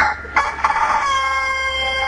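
Rooster-crow sound effect, sounding a judge's "palomazo" vote: a rough, scratchy start about half a second in, then one long, steady, held call.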